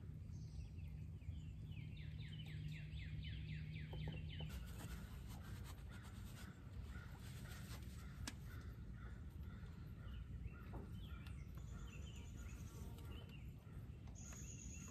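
Faint outdoor ambience with a bird singing a quick run of repeated descending chirps, about four a second, from about one to four seconds in. A few faint clicks sound later.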